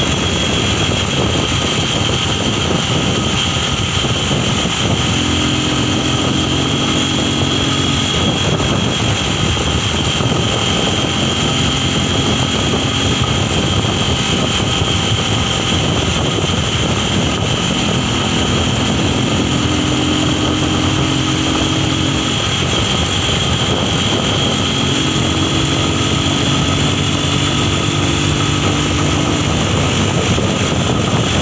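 A moving motor vehicle's engine and road noise, heard from its open back. The noise is loud and steady, with a high whine that runs throughout. A lower engine hum swells in and out several times.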